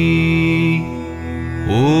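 A male voice chanting a Tamil devotional mantra over a steady drone. The held last syllable of one line fades out about a second in, leaving the drone, and the next chanted 'Om' begins near the end with a rising pitch.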